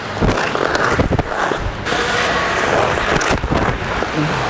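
Ice hockey skate blades scraping and carving on the ice in a backward crossover start. A few sharp pushes come in the first two seconds: the C-cut, the crossover and the outside edge kick. Then there is a steadier hiss of the blades gliding backward.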